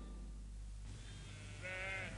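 A single short sheep bleat, faint, near the end, over a low steady hum.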